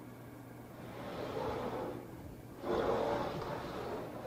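Carpet-covered cabinet of a Peavey 300 Series Monitor amplifier head scraping on a table as it is turned around by hand: two soft scraping sounds of about a second each, over a steady low hum.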